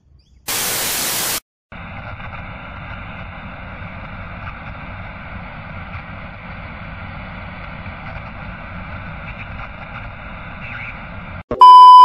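A short burst of loud hiss like TV static, then a quieter steady hiss under the end credits. Near the end it cuts to a loud, steady high beep: the test tone that goes with TV colour bars.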